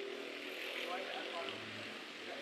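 Racing kart engines droning from the track, shifting slightly in pitch, with voices talking over them.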